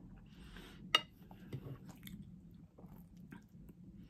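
Close-up chewing and mouth sounds with soft scattered clicks of a knife and fork. About a second in, one sharp, ringing clink of cutlery against the plate.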